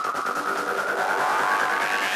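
Psytrance music in a breakdown with no kick drum: a held synth tone slowly rising in pitch, with a sweeping riser climbing over it in the second half as the track builds up.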